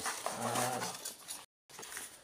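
A man's drawn-out 'aah', with the rustle of a small cardboard box being handled and its flap opened. The audio cuts out completely for a moment about a second and a half in.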